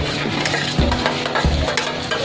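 Chopped meat and innards for papaitan sliding and being scraped off a stainless steel tray into a pot on the stove, sizzling as they land, with scattered clicks of metal and pieces falling.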